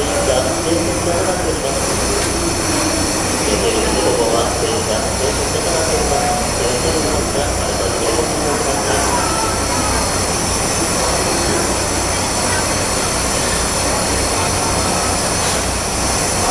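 JNR Class C11 steam tank locomotive standing at a platform, hissing steam steadily, with a crowd talking around it.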